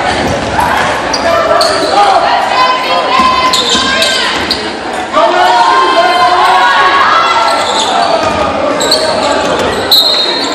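Basketball game sounds in a school gymnasium: the ball dribbling on the hardwood floor amid overlapping shouting voices of players and spectators.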